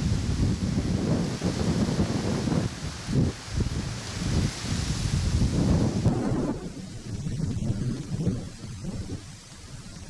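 Gusty wind buffeting the camera microphone: an uneven low rumble that rises and falls in gusts. A higher steady hiss runs with it and dies away about six and a half seconds in.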